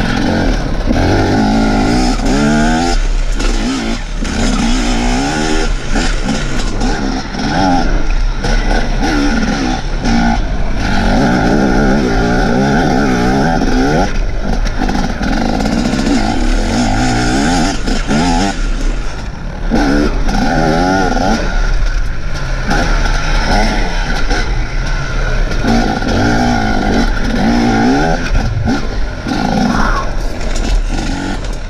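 Enduro motorcycle engine revving up and easing off again and again as it is ridden hard through a cross-country test. The pitch rises and falls in repeated sweeps, with a brief let-off just past the middle. It is heard from the bike's onboard camera.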